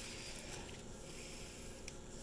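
Plastic bubble-wrap sleeve rustling and crinkling faintly as a velvet drawstring bag is slid out of it, mostly in the first second, with a light tick near the end.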